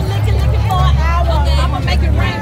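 Loud party music with a heavy, steady bass line, a voice riding over it, and crowd chatter.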